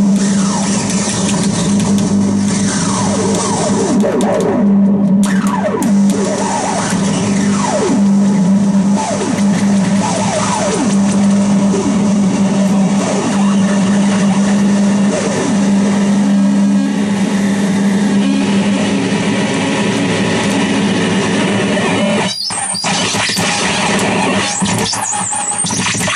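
Harsh noise from a contact-miked metal plate handled by hand and run through fuzz and distortion pedals, a digital delay and a filter bank: a loud, dense distorted wall of noise over a steady low drone. Many falling pitch sweeps run through the first half, and the noise briefly cuts out near the end.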